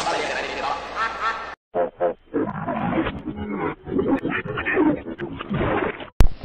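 Heavily effects-processed logo audio: distorted, voice-like growls and roars. It is cut off abruptly about a second and a half in, and after a brief gap a duller, muffled-sounding clip of choppy growling takes over.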